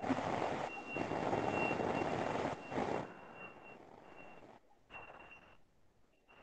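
Background noise coming through a video-call participant's open microphone: a noisy rush with a thin, high, steady tone through it, both cutting in and out and dropping away in the second half.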